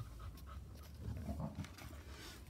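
A dog panting in rapid short breaths.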